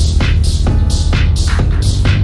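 Electronic dance music from a sampler remix: a loud, steady deep bass under a crisp high percussion hit about twice a second, with short held synth chords in between.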